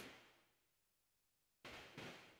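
Near silence: room tone, with one faint mouse click at the start and a faint rush of noise near the end.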